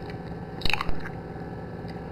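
A short wet squish a little under a second in, as raw opened eggs in a bowl are pushed around with a utensil.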